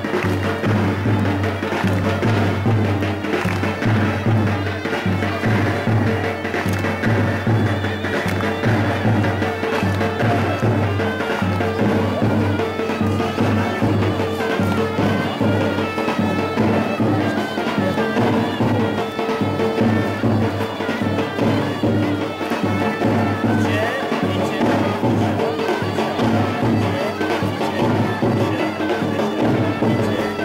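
Turkish folk dance music: a shrill reed wind instrument carries a wavering melody over a held drone and a steady, pulsing drum beat, in the manner of davul and zurna playing for a halay line dance.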